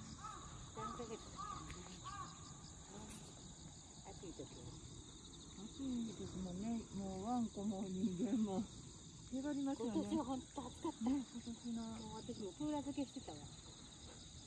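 Steady high insect chirring throughout, with people talking over it from about six seconds in.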